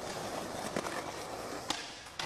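Skateboard wheels rolling steadily over a smooth concrete floor, with a few sharp clicks, the loudest near the end.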